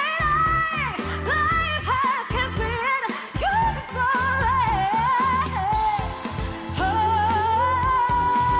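A female pop singer singing live with a band, her voice moving through quick runs over bass and drums, then settling onto a long held high note about seven seconds in.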